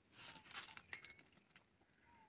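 Near silence with faint rustles in the first second and a couple of faint short bird chirps.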